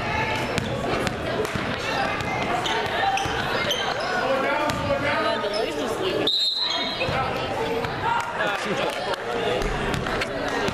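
A basketball bouncing on a hardwood gym court amid spectators' voices and chatter echoing in a large hall, with a brief high steady tone about six and a half seconds in.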